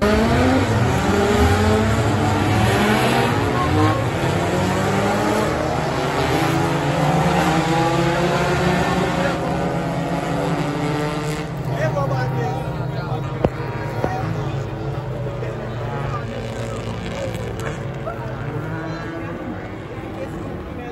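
Several race car engines accelerating hard off the start, their pitches climbing together through the gears, then holding and slowly fading as the field pulls away around the circuit. A single sharp click comes about thirteen seconds in.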